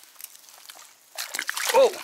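Bass splashing and sloshing in shallow weedy water as it is let go and darts off, starting a little over a second in, with a man's 'Oh'.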